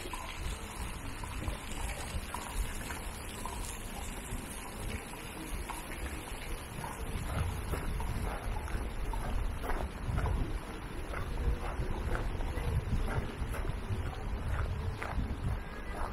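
Footsteps crunching on a gravel square, a short tick a few times a second, with wind rumbling on the microphone, heavier in the second half.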